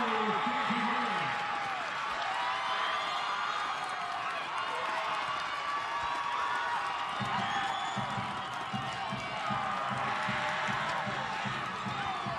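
Crowd cheering and shouting for a goal, many voices over one another, with a short laugh at the start. A low voice talks underneath in the second half.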